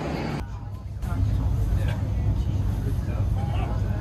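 Crowd babble on a packed railway platform, cutting about half a second in to the steady low rumble of a train heard from inside the carriage, with passengers' voices faint over it.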